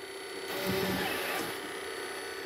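Slick Willie Flex lane machine running with its oil pump started, a steady faint hum with thin high tones, and a louder stretch of mechanical noise from about half a second in, lasting around a second, as the machine is set onto the lane.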